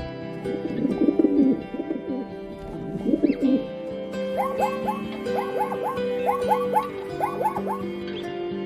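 Rock pigeon cooing in low warbling phrases, then short chirping calls repeated in quick threes, over steady background music.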